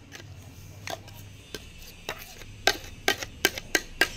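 A series of light, sharp taps and clicks, coming closer together in the second half, as a stainless-steel mixer-grinder jar is handled and tipped to pour out a thick paste, over a faint steady low hum.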